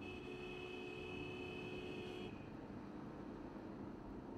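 Heavy military trucks running on a road, a steady low rumble of engines and tyres. A steady high-pitched tone sounds over it and cuts off a little over two seconds in.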